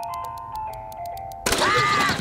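Toy jack-in-the-box being cranked: quick, steady ratchet clicks under a tinkling music-box tune. About a second and a half in, the box springs open with a sudden loud burst of noise and a high arching tone.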